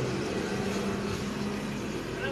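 Car engine idling steadily, heard from inside the cabin, with a faint steady hum.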